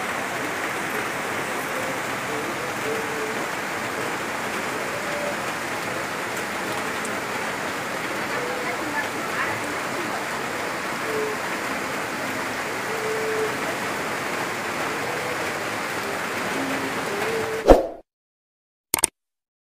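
Heavy monsoon rain pouring down, a steady even hiss, with a brief loud burst just before the sound cuts off near the end.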